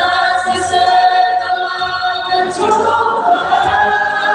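A group of voices singing a hymn together in long held notes, led through a microphone and the church's loudspeakers.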